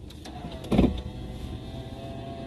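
A car's electric power window motor running with a steady whine, starting about half a second in, with a brief low thud just under a second in.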